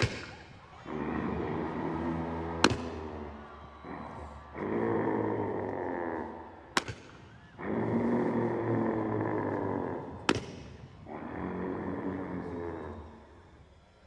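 Zozobra's deep, growling groans played over loudspeakers: four long moans, each about two to three seconds, with short pauses between. A sharp crack sounds at the start and three more during the groaning.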